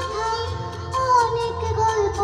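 A group of singers performing a song live on stage with instrumental accompaniment and a regular percussion beat.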